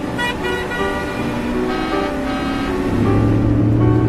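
Background music over the rushing noise of a car driving fast on a road, with a low steady hum swelling in about three seconds in.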